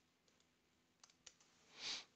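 A few faint computer keyboard clicks, then a short soft rush of noise near the end.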